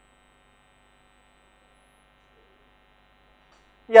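Faint steady electrical hum of room tone, a few thin unchanging tones. A man's voice comes in right at the end.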